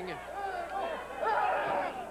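Arena crowd shouting and yelling during a wrestling match, with overlapping voices that swell louder in the second half.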